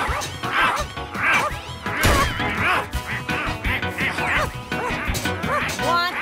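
Cartoon dog barking in quick, short yaps over action music, with a crash about two seconds in.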